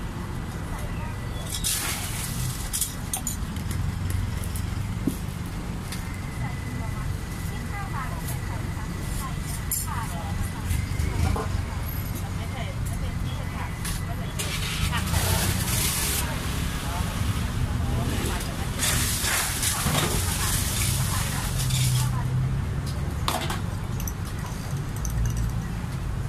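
Background chatter over a steady low rumble of road traffic, with scattered clinks of spoons, jars and glasses and a few bursts of hiss.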